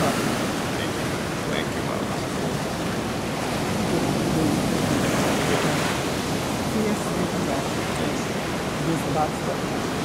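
Ocean surf breaking on a sandy beach: a steady, even rush of waves.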